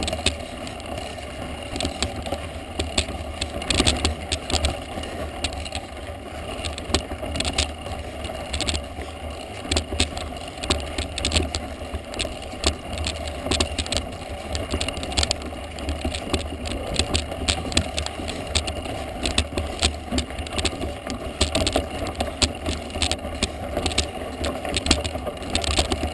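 Mountain bike climbing a loose gravel dirt track: knobby tyres crunching over stones, with frequent rattling and clicking from the bike over a steady low rumble.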